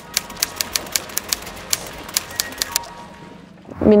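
Typewriter key clicks in a quick, even run of about five or six strikes a second, stopping after about three seconds, over faint music; a typing sound effect for an on-screen title.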